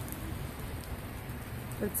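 Steady rain falling, an even hiss of downpour with no breaks.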